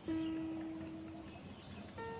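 Soft background music: a single ringing note starts at once and fades away over about a second, then a second, higher note sounds near the end.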